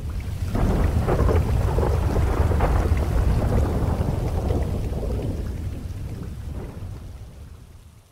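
Thunder rolling over steady rain in one long rumble that swells in during the first second and slowly fades away near the end.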